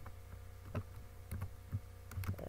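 A few isolated keystrokes on a computer keyboard, spaced out and unhurried, over a steady low hum.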